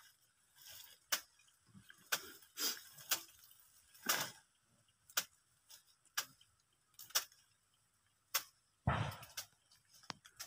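Irregular sharp knocks and clacks of cut sugarcane stalks being stacked onto a truck's load, one every second or so, with a heavier thud about nine seconds in.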